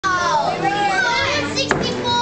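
Children's high-pitched voices calling and chattering, with one sharp knock near the end.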